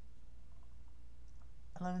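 Low, steady background hum with little else, then a voice starts speaking near the end.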